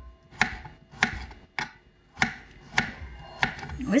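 Kitchen knife chopping peeled fresh ginger on a wooden cutting board: about six crisp chops at an even pace, roughly one every half second or so.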